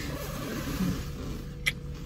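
Steady low hum of a car idling, heard from inside the cabin, with soft rustling and a single sharp click near the end.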